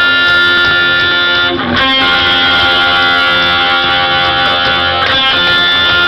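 Loud amplified live rock music: electric guitar chords ringing out, changing about every three and a half seconds, heard from the crowd in front of the stage.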